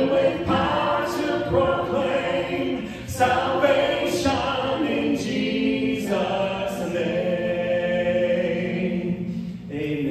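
A congregation and worship leader singing a hymn together, with a small worship band of guitar, keyboard and drums accompanying. The singing breaks briefly between lines about three seconds in and again near the end.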